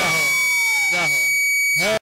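A man's voice through a microphone and sound system with a steady high-pitched tone under it and a slowly falling pitched sound about halfway. The sound cuts off suddenly at the end.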